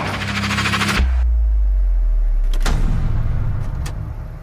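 Advertisement soundtrack sound design: a fast rattling build-up that cuts off after about a second into a deep, sustained bass boom. This is followed by two sharp clicks over a low hum.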